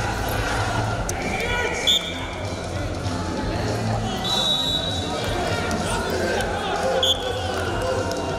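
Arena crowd noise with shouting voices, cut by a short, sharp referee's whistle blast about two seconds in and another near the end, with a longer whistle tone in the middle: the bout being stopped and then restarted.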